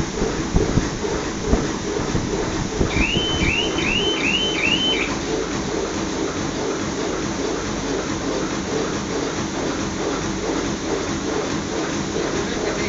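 Plastic bag bottom-cutting machine running steadily, a continuous mechanical drone with a few sharp knocks in the first two seconds. About three seconds in, five short high rising chirps sound in quick succession.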